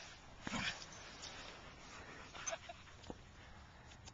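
Two dogs at rough play giving short, faint vocal sounds: one about half a second in and another about two and a half seconds in, with a small tick just after.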